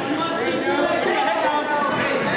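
Many spectators' voices chattering over one another in a gymnasium.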